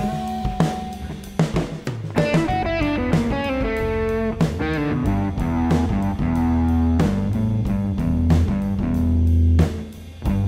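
Rock instrumental recording playing, with electric guitar lines over bass and drum kit. The music dips briefly near the end.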